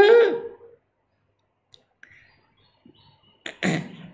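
A man's voice: a short spoken syllable at the start, then a pause, and a single cough near the end.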